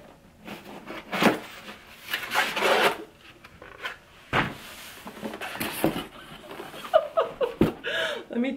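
Cardboard flaps of a shipping case rubbing and scraping as the box is pulled open, in several separate bursts.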